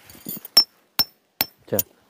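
Three sharp metallic strikes about 0.4 s apart, each with a brief ring: a tent peg being hammered into the ground.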